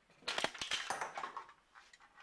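Crackling, clattering handling noise: a quick, dense run of clicks and rattles lasting about a second, then a few fainter ticks near the end.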